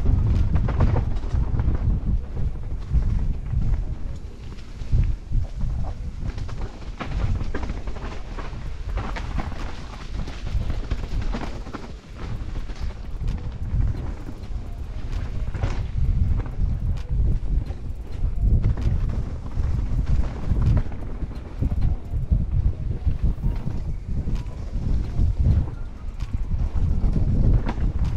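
Mountain bike descending a rough, leaf-covered dirt trail, heard from a helmet camera: wind buffeting the microphone over the constant rattle and knocks of the bike and tyres hitting bumps and roots.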